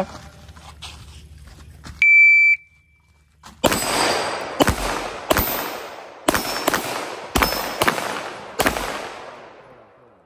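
An electronic shot timer beeps once, about two seconds in, then a 9mm Canik pistol fires about eight shots at a steady pace, roughly one every 0.7 s, each shot echoing off the surroundings.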